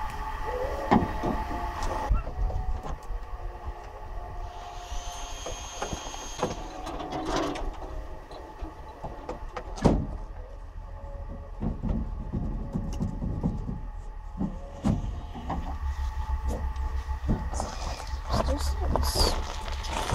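Hand tools clinking and knocking on a generator's sheet-metal enclosure as the panel screws are worked with a screwdriver. There are scattered sharp clicks, the loudest about ten seconds in, over a steady low rumble.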